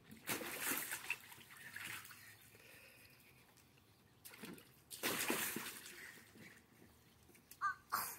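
Water splashing and sloshing in a small plastic kiddie pool as a body flips into it, with another burst of noise about five seconds in.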